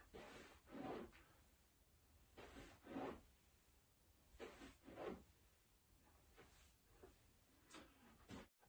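Near silence, with faint soft breath-like rustles coming in pairs about every two seconds from a person working through repetitions of a floor stretch on hands and knees.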